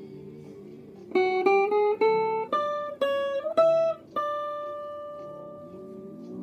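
Clean-toned electric guitar playing a requinto melody: a run of about eight plucked single notes climbing in pitch from about a second in, then one higher note held and left ringing, fading slowly. A soft backing of chords sits underneath.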